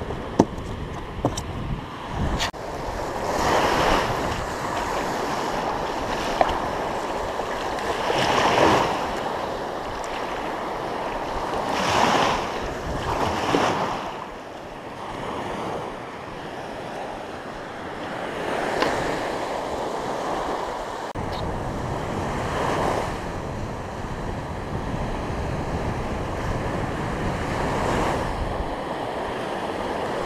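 Ocean surf breaking on a beach, the rush swelling and fading every few seconds, with wind buffeting the microphone. A few sharp clicks near the start.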